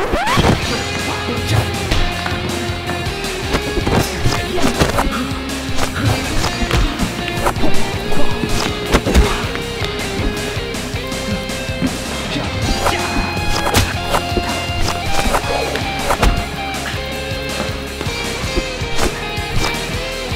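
Music that starts suddenly, with many sharp hits throughout.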